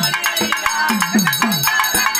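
Pambai melam folk drumming: pambai drums beat a fast, even rhythm of strokes that each slide down in pitch, about three to four a second. A bright metallic ringing clatter runs over the drums.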